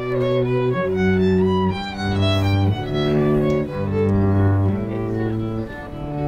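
Live violin and cello playing a slow piece in long held notes, the cello's low line and the violin's melody changing about once a second.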